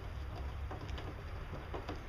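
Quiet outdoor background with a low steady rumble, and a couple of faint light taps from handling the pump cord inside the plastic reservoir base.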